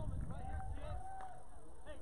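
Distant, indistinct voices chattering, with a low rumble in the first half-second.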